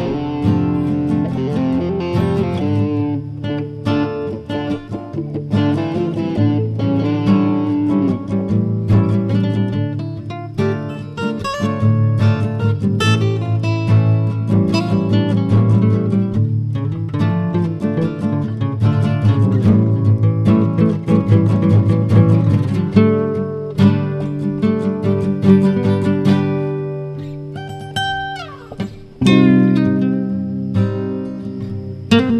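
Guitar instrumental music, with notes and chords played continuously. Near the end it dies away briefly, then comes back loud with a sudden chord.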